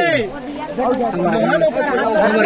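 Several people talking and calling out at once, a crowd's overlapping voices. A loud shout tails off with a falling pitch right at the start.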